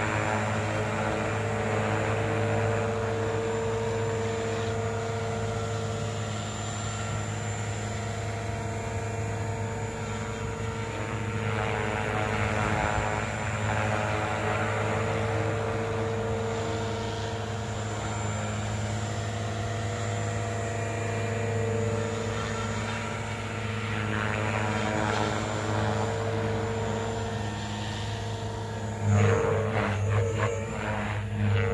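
JR Forza 450 electric RC helicopter hovering: a steady whine from the motor and main rotor, with a tone that swells and fades every few seconds as the helicopter slowly turns. Just before the end the sound turns suddenly louder and choppier.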